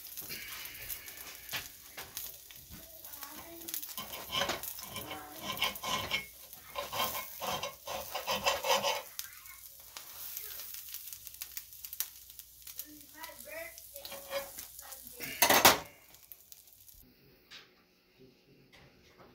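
Toast topped with egg, peppers and onions sizzling in a cast-iron skillet, with a metal utensil scraping and clinking against the pan in irregular strokes. There is one loud scrape near the end.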